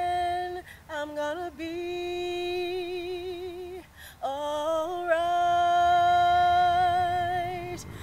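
A woman singing unaccompanied: a few short notes, then two long held notes with a slow vibrato. The second starts about four seconds in and is the louder.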